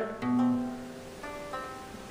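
Acoustic guitar playing two single plucked notes, one after the other, each left to ring and fade. The first is on one string, and the second is fretted at the second fret of another string, the opening notes of a simple riff.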